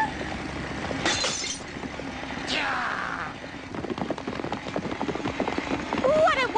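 Cartoon sound effects: a high swoop falling steeply in pitch about two and a half seconds in, then a fast run of clattering, breaking-sounding clicks and knocks in the last couple of seconds.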